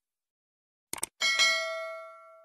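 Subscribe-button sound effect: a quick double mouse click about a second in, then a bell ding that rings on and fades away.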